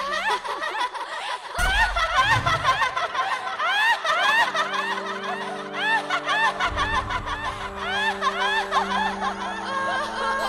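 Several women's voices laughing together in rapid, high-pitched peals, over background music with sustained notes. A low hit sounds about one and a half seconds in.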